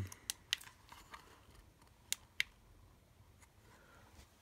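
Small plastic clicks and taps from hands working a plastic solar LED spotlight and its cable plug as it is switched on. The clicks come scattered, with two sharper ones a little past two seconds in.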